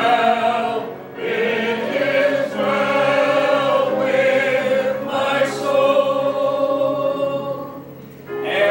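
A congregation singing a hymn together in long held notes, phrase by phrase, with short breaths between phrases about a second in and near the end.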